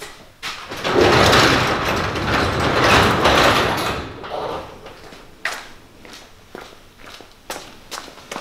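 Overhead garage door rolling open, a loud rumble lasting about three seconds from about a second in, followed by a few short knocks.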